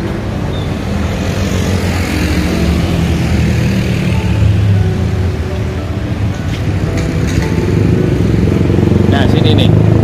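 Street traffic: motor scooters and cars running past, with a steady low engine hum and a passing swell of road noise a couple of seconds in.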